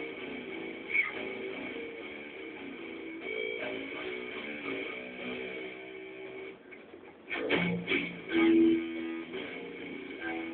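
Schecter seven-string electric guitar being played: a run of single picked notes, then after a short lull about seven seconds in, a few louder struck notes that ring on.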